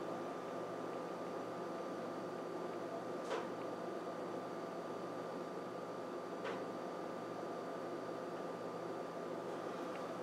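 Steady, low room tone: an even hiss with a faint fixed hum. There is a faint tick about three seconds in and another a little after six seconds.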